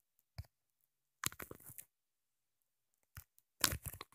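Faint, brief crunchy handling noises: fingers tapping on the phone's touchscreen, picked up by its own microphone. There is a short cluster of them a little past a second in and a louder one near the end.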